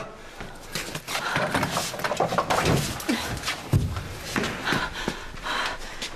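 Clattering and a run of wooden knocks as a barred wooden prison-cell door is unlocked and pulled open, the knocks coming thick and irregular from about a second in.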